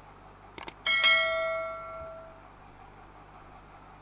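Subscribe-button animation sound effect: two quick clicks, then a single bright bell ding that rings out and fades over about a second and a half.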